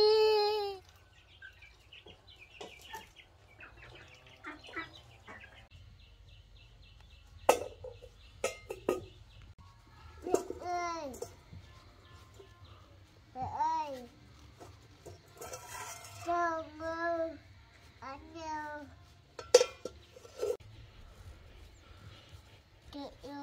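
A toddler crying loudly for about the first second, then, after a quiet stretch, short wavering cries and calls from the same young child from about ten seconds in, with a couple of sharp knocks.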